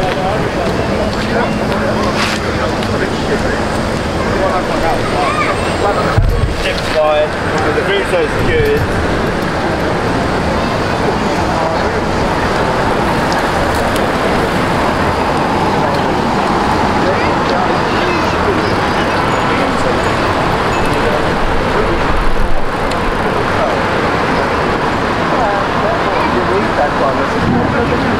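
Busy city waterfront street ambience: road traffic going by with people talking around. A steady low hum runs for the first few seconds, and a short heavy thump comes about six seconds in.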